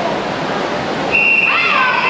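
Busy pool-hall noise of voices and echoing chatter; about a second in, a long, steady, high whistle tone starts and holds, typical of the referee's long whistle calling backstrokers to the wall before the start.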